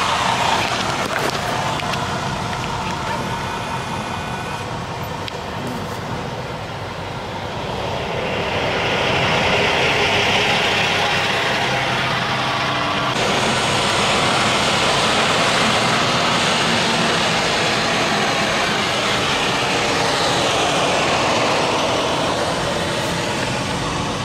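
Road and traffic noise heard from inside a car crawling in a highway jam, with a semi-trailer truck alongside. The noise swells about a third of the way in and turns brighter and hissier about halfway through.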